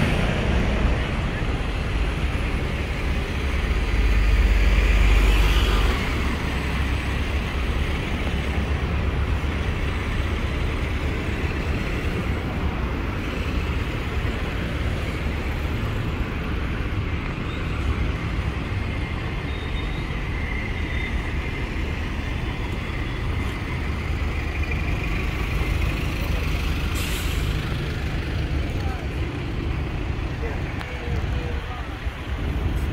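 London buses and street traffic running steadily, with a heavy low engine rumble swelling for a few seconds near the start as a bus moves close by. Two short air-brake hisses come, one near the start and one near the end.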